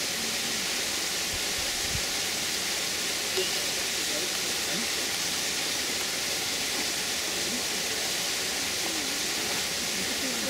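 Steady, even hiss of outdoor background noise, with faint voices talking in the distance now and then.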